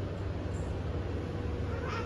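A baby's short, high whimper near the end, over a steady low hum.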